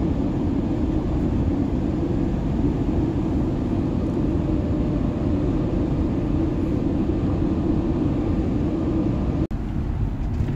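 Steady road and engine noise of a campervan travelling at motorway speed, heard from inside the vehicle. It is a low rumble that cuts out for an instant near the end and then carries on.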